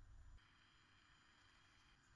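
Near silence: faint room tone, dropping even lower about half a second in.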